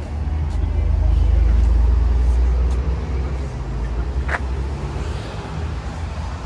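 Roadside street ambience: low rumble of passing traffic that swells about a second in and eases off, with a brief sharp sound about four seconds in.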